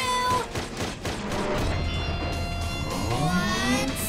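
Cartoon background music with steady sustained tones, and an animal-like cry rising in pitch from about three seconds in.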